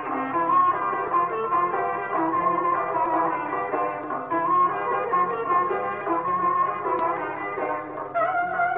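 Turkish folk music from a recording with no high end: a melody instrument plays held, stepping notes over accompaniment.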